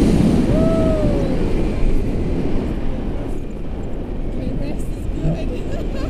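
Wind rushing over the camera microphone in flight under a paraglider, with a passenger's long whoop that rises and falls in pitch about half a second in.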